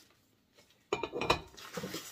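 A marble lid being set onto a glass canister: a few sharp clinks and a scrape starting about a second in, with the rustle of packing paper.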